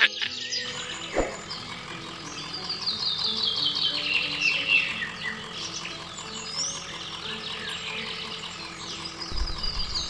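Birds chirping and twittering in quick runs of short high notes, over soft background music.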